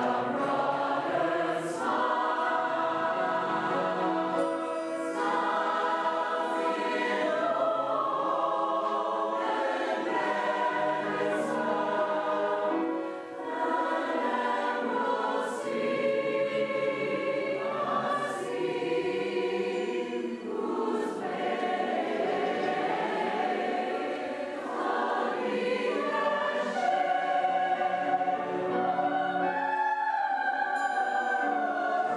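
Mixed choir of men's and women's voices singing sustained parts, with a brief breath between phrases about thirteen seconds in.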